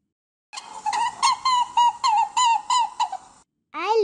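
Recorded rabbit sound effect: a run of about ten short squeaky calls, three or so a second, each bending up and down in pitch, over a faint hiss.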